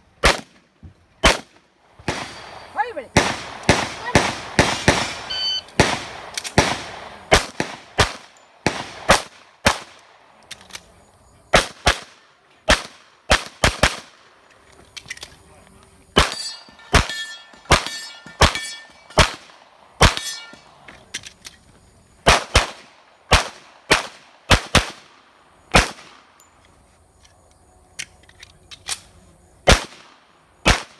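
Rapid pistol shots from a single-stack 1911, fired in quick pairs and strings with short pauses between positions. Some shots are followed by the brief ring of steel plates being hit.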